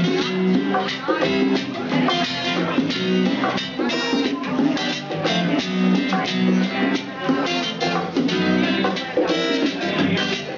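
Live acoustic reggae band playing an instrumental stretch: two acoustic guitars strumming a steady rhythm over hand drums.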